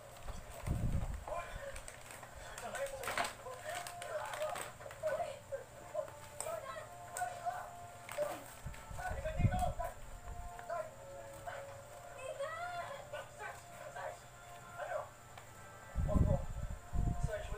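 Indistinct voices and some music in the background, with two low thumps, about a second in and about nine seconds in.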